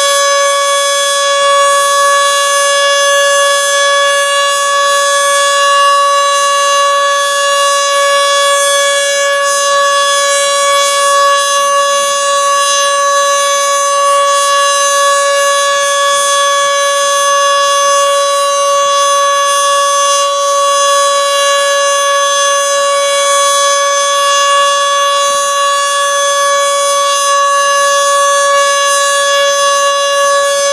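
Federal Signal Model 2 electromechanical siren running at full speed on a test, holding one steady, loud wailing tone with no rise or fall.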